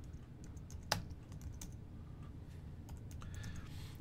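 Typing on a computer keyboard: a few faint, scattered keystrokes, one louder than the rest about a second in.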